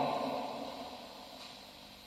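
A pause in a man's speech in a church: the reverberation of his last word fades away over about a second into faint, steady room hiss.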